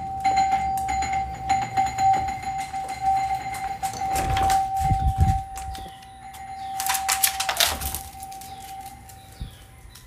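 A steady high-pitched electronic-sounding tone that weakens about eight seconds in, over rustling and handling noise, with a louder burst of noise about seven seconds in. Birds chirp faintly near the end.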